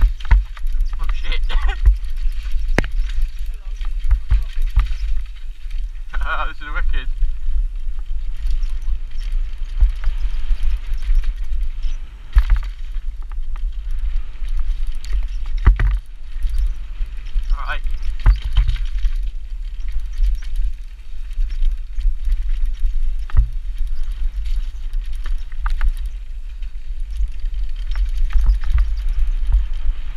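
Mountain bike riding fast down a rough dirt trail: a constant heavy wind rumble on the microphone, with tyre noise and frequent rattling knocks as the bike goes over roots and bumps.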